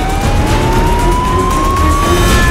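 Ambulance siren wailing, one slow rise in pitch, over the rumble of the speeding vehicle's engine and tyres.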